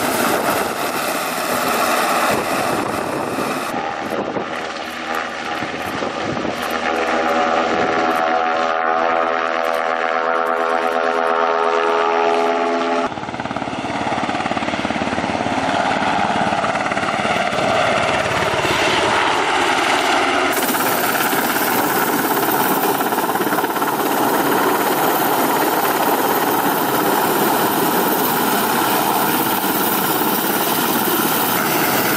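TUSAŞ T-70 firefighting helicopter, a twin-turboshaft Black Hawk derivative, flying with its main rotor and turbines running in a steady, loud wash. The sound shifts abruptly twice, near the middle and about two-thirds through, as the distance to the helicopter changes. A clear evenly pitched rotor tone stands out for several seconds before the first shift.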